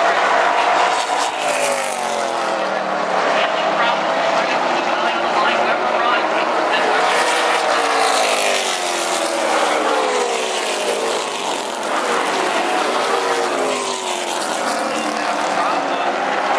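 A pack of late model stock cars racing past on an oval track, their V8 engines running hard. The pitch rises and falls in repeated swells as cars accelerate down the straights, lift for the turns and pass by.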